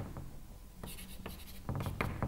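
Chalk writing on a blackboard: a series of short taps and scratches as strokes are drawn, sparse at first and coming quicker in the second half.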